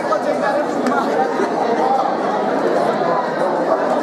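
A crowd of many people talking at once: a steady, fairly loud babble of overlapping voices with no single speaker standing out.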